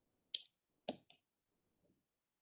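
Near silence broken by three faint, short clicks: one about a third of a second in, then two close together around the one-second mark.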